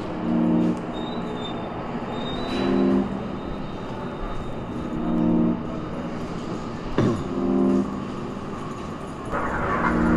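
Minimal dub techno track: a low chord stab repeating about every two and a half seconds over a steady hissing, noisy background, with a falling swoosh about seven seconds in.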